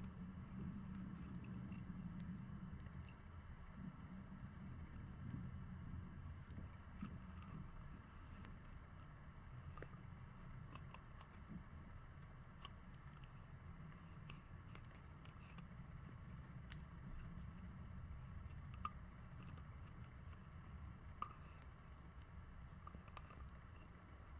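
Faint scraping with scattered small clicks from a hand die in a die-stock handle cutting new M6 × 1 threads onto a carburettor throttle cable elbow, over a low steady hum.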